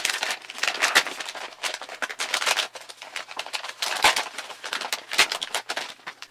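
A plastic snack-style toy packet crinkling and crackling as it is handled and opened, in a dense run of sharp crackles.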